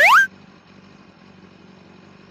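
A short, loud, whistle-like swoop rising sharply in pitch right at the start, an edited-in sound effect. After it, a faint steady low hum of a motorcycle engine idling.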